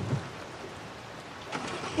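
Steady outdoor background noise: a faint, even hiss with no distinct event.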